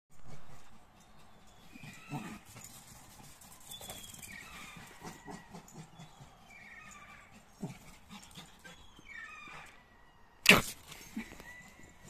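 Small Lhasa Apso–Shih Tzu cross dog giving short, excited yelping and whining calls every second or two as she runs about. One sharp knock sounds about ten and a half seconds in.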